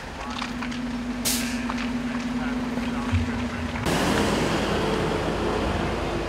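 Fire truck engines running with a steady hum, and a short hiss of air about a second in. About two-thirds of the way through the sound turns suddenly louder and fuller, a dense rush of engine noise with several steady tones.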